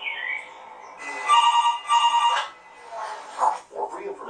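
Electronic telephone-style ring, two short bursts in quick succession about a second in, as a medical alert system's call goes through after its pendant button is pressed. A voice follows near the end.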